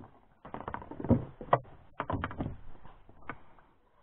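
Irregular sharp knocks, slaps and rustles of a freshly caught small bream being handled in an inflatable boat, the fish thrashing in the hand and against the boat.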